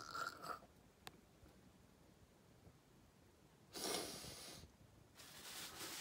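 A person breathing out heavily with a mouth full of food: a short huff at the start and a longer, louder one about four seconds in. There is a faint single click about a second in, and otherwise it is mostly quiet.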